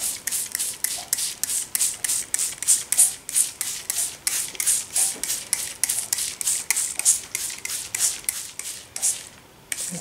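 Plastic trigger spray bottle squirting liquid dye onto wet paper, many quick squirts in a steady rhythm of about three to four a second, stopping shortly before the end.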